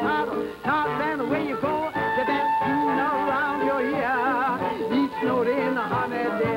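Dixieland jazz band playing a lively instrumental passage: clarinet, trombone and trumpet weave melodies over drums, with the horns' vibrato wavering and one note held for about a second some two seconds in.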